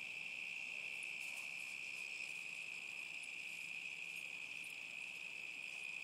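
Crickets chirping in a steady, unbroken high-pitched chorus.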